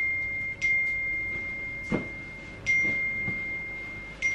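Smartphone message notification chime going off again and again, a bright ringing tone that restarts every second or two as each new alert arrives: a flood of incoming messages.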